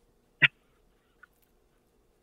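One very short voice sound from a person, a single brief vocal noise about half a second in, with near silence around it.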